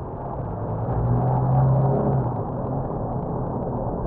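Car engine running at steady revs, a low drone that swells to a peak about two seconds in and then eases off, as the tuned Mercedes-Benz C-Class is driven along the road.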